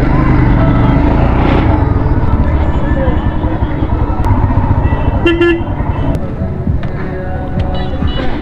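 Royal Enfield single-cylinder motorcycle engine running under light throttle at low road speed, with a short horn toot about five seconds in.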